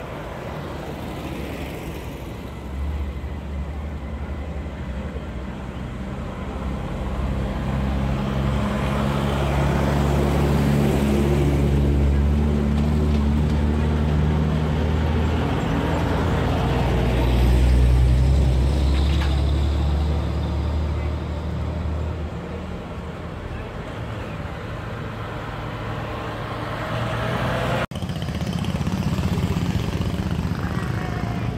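Engines of WWII-era military vehicles driving slowly past close by, one after another; a heavy truck's engine is the loudest, a low steady rumble that swells through the middle and then fades. A brief break cuts the sound near the end.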